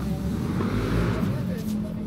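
Distant voices over a low rumbling noise that swells and fades about a second in, with a couple of faint ticks near the end.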